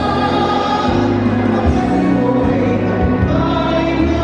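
Group of two men and two women singing together in harmony into handheld microphones, amplified through a PA. The singing is loud and continuous, with long held notes.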